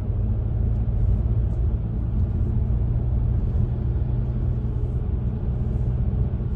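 Steady low road rumble inside a moving car's cabin: tyre and engine noise while driving on a motorway, with a constant low hum underneath.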